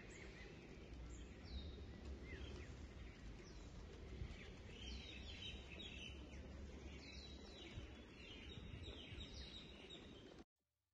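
Faint street ambience: a low steady rumble with many short bird chirps, coming more often in the second half.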